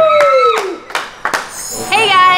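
A high voice drawing out one exclamation that rises and then falls in pitch, followed by a few sharp hand claps.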